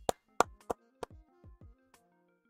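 About six sharp knocks in quick succession, the loudest about half a second in, some with a short low thud, over faint background music.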